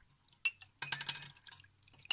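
Aquarium filter parts clinking and knocking against each other in a plastic tub of water as they are rinsed under a hose, with splashing. There are two short bursts of clatter, about half a second and one second in.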